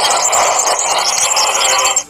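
Loud, steady, noisy soundtrack of a prank video playing through the phone, with no clear words or tune in it. It cuts off suddenly at the end as the video is closed.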